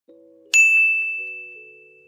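Intro music: a soft held chord with a single bright chime ding about half a second in, which rings and fades away over the next second and a half as the chord shifts.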